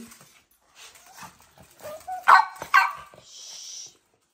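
A small dog barking: a few faint yips, then two loud sharp barks about half a second apart, a little over two seconds in.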